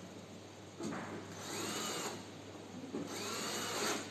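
Cordless drill-driver running in two bursts of about a second each, turning screws in the sheet-metal cabinet of a washing machine, its whine rising in pitch as each burst starts.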